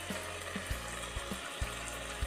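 Mutton and masala sizzling in a metal pan, a steady hiss, as beaten curd is poured over the meat and spread with a spoon. Faint low thumps sound underneath every half second or so.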